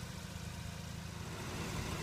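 Mazda RX-8's Renesis rotary engine idling, heard as a steady low hum, running so the oil cooler line is under pressure and its leaking lower connector can be seen seeping oil.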